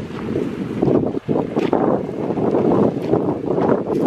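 Wind buffeting the camera's microphone: a loud, uneven, gusty rumble, with a brief lull about a second in.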